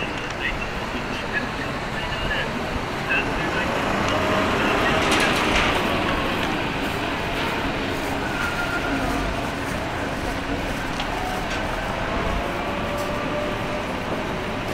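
Street ambience at a bus terminal: steady traffic and vehicle noise with scattered voices of passers-by, swelling to its loudest around five seconds in as something passes.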